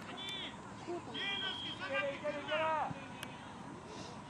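Children's voices shouting and calling out across a youth soccer pitch during play: several short high calls, one held for about half a second about a second in.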